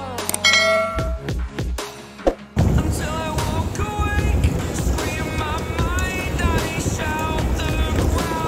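Background music throughout, with a click and a short bell-like ding under a second in. About two and a half seconds in, a loud rumble of a small open boat running through choppy water comes in suddenly under the music.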